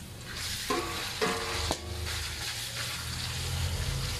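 Raw pork pieces dropped into a hot wok of oil with sautéed garlic and onion, sizzling hard as they hit: the frying starts about a third of a second in and holds steady. A few short metallic clanks and scrapes of the container against the wok come in the first two seconds.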